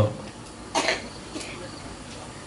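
A man coughs briefly into a handheld microphone: one short cough a little under a second in, then a fainter one about half a second later.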